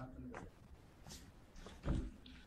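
Faint, indistinct voices with a few short noises, and a dull thump just before the end.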